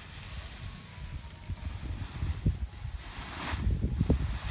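Wind buffeting the microphone in gusts, with dry rice plants rustling as they are handled in the field; a louder rustle comes near the end.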